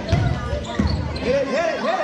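Basketball dribbled on a gym floor, a few low bounces in the first second, with voices calling out over it.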